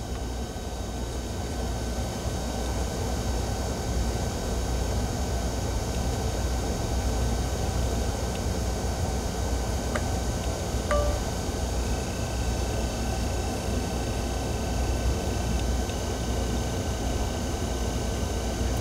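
Steady low hum and hiss of background noise, with faint high steady tones and a couple of faint short tones about ten seconds in.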